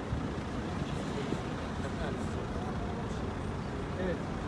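Steady low rumble of idling car engines and road traffic, with indistinct voices of people crowded around the car.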